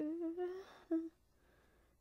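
A woman humming: a held note that rises slightly, then a short second note about a second in.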